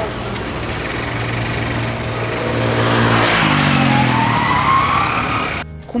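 Road traffic: a heavy truck's diesel engine drones steadily, then about three seconds in a louder pass-by swells with the engine note falling and tyre noise rising. The sound cuts off abruptly just before the end.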